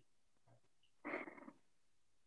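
Near silence, broken about a second in by one short, breathy exhale from a woman, about half a second long.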